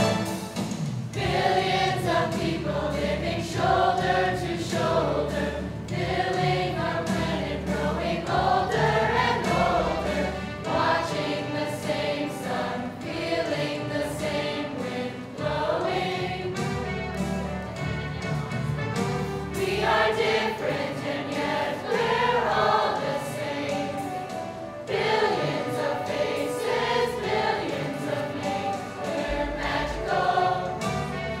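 A mixed youth choir singing in unison and harmony over instrumental accompaniment, in long sustained phrases with a short break between phrases about 25 seconds in.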